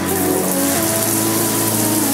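Overhead rainfall shower coming on and then running, water pouring down in a steady hiss.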